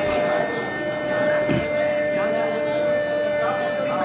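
Indistinct chatter and murmured talk among a gathering, over a steady high-pitched tone that holds throughout.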